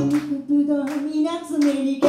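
The band stops for a short break. A singer holds one long note while a few hand claps sound over it.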